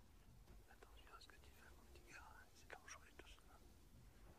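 Near silence, with faint whispered voices between about one and three and a half seconds in.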